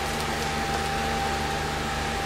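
Steady background noise: an even hiss with a low hum and a faint high steady tone, like a fan or other machine running in a small room.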